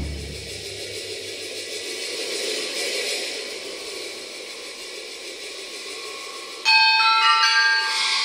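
Percussion music: a deep drum stroke dies away under a sustained metallic shimmer, then about two-thirds of the way in a loud run of bell-like struck notes at several pitches rings out from a rack of small tuned gongs.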